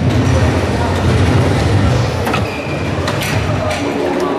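Steady low rumble and murmur of a busy tournament hall, with a few sharp clicks in the second half: soft-tip darts striking an electronic dartboard.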